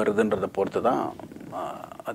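A man speaking, his voice getting quieter and trailing off in the second half.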